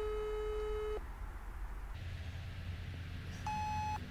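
Smartphone on speaker playing the ringback tone of an outgoing call that has not yet been answered: one steady low tone about a second long, then a pause, then a shorter, higher beep near the end.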